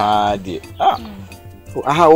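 A man's loud, drawn-out shouted cry in the first half second, sliding slightly down in pitch, then a shorter vocal sound about a second in, over background music.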